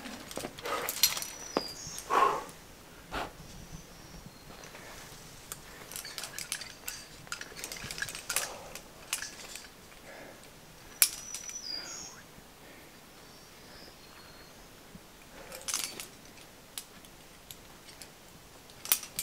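Metal climbing gear clinking: carabiners and quickdraws on a harness rattling in light, scattered jingles as a lead climber moves and clips the rope, with one sharp click about eleven seconds in.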